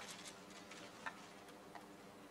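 Faint, scattered clicks of press camera shutters, a few irregular ones over quiet room tone.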